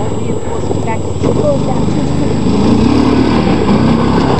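ATV engine running as the quad drives over rough dirt toward the listener, a bit louder and higher in the second half.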